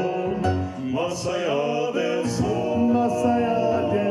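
Male vocal quartet singing a song in close four-part harmony through handheld microphones, the voices holding chords that shift together every second or so.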